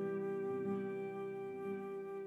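Slow, soft instrumental relaxation music: a flute holds one long note over a low accompaniment that swells about once a second.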